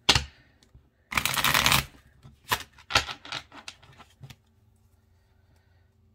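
Tarot cards being handled: a sharp tap, a brief rush of cards being shuffled about a second in, then a few light taps and clicks before it goes quiet.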